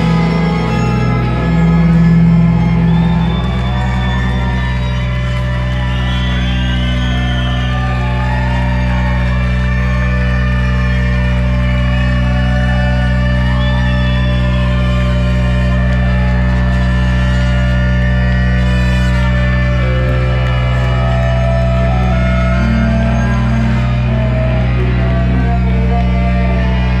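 A live rock band and brass section playing: a steady, sustained low drone with saxophones and trumpet holding notes that waver and bend above it.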